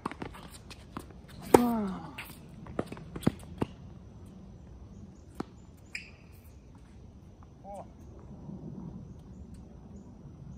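Tennis rally: a sharp racket-on-ball strike about a second and a half in, followed at once by a player's falling grunt, then several quicker ball hits and bounces over the next two seconds and a few fainter ones after.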